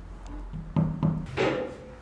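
Dull knocks from a mallet tapping a picture hook into a wall, with music playing underneath.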